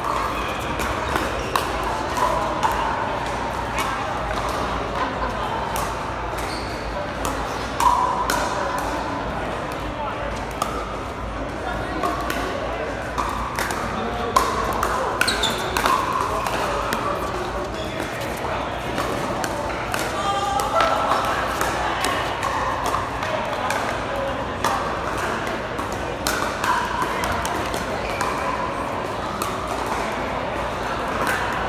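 Pickleball paddles striking a hard plastic ball during rallies: repeated sharp pops at an irregular pace, over crowd chatter.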